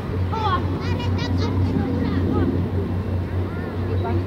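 Children's voices calling out across a football pitch, in short shouts at scattered moments, over a steady low hum.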